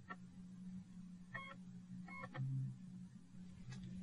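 Computer DVD drive being ejected and reloaded: a few quiet clicks and two short buzzing tones from the drive mechanism over a faint steady hum.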